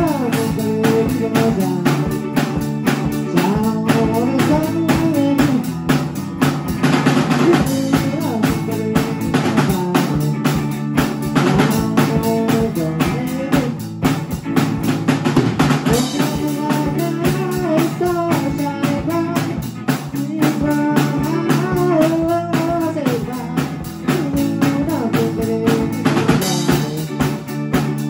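A drum kit and a guitar playing a slow song together. The snare, bass drum and cymbals keep a steady beat under the guitar's melody.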